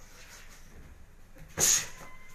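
A boxer's single sharp hissing exhale with a punch, loud and brief, about a second and a half in, over faint gym background.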